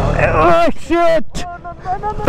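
A man's voice calling out loudly in short exclamations. Beneath it, the KTM Duke 125's single-cylinder engine runs low and fades out within the first half second.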